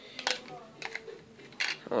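A few light clicks and clinks of small hard objects being handled, in three short clusters.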